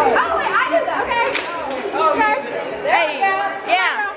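Overlapping chatter of several voices talking at once, with a high-pitched voice rising sharply near the end.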